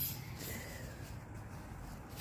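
Quiet outdoor background: a low, steady rumble with no distinct events.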